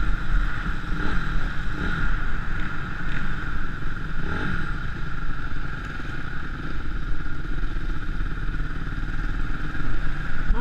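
Trail motorcycle engine running steadily on the road, heard from a helmet-mounted camera with wind rushing over the microphone; the engine note rises and falls a little a few times in the first half.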